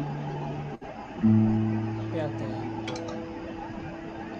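Guitar's open fourth (D) string ringing as it is checked against a tuner app, stopped short just under a second in. A lower open string is then plucked with a sharp attack about a second and a quarter in and rings out steadily, slowly fading.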